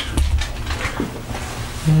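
Low rumble and a few light knocks of the camera being handled and swung around, then a long drawn-out spoken 'and' near the end.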